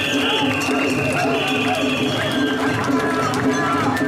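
A crowd of mikoshi bearers chanting and shouting together as they heave a portable shrine, over festival music with long high held notes that step between two pitches.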